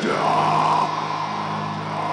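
Black metal song: a long harsh, shouted vocal held over sustained distorted guitar chords.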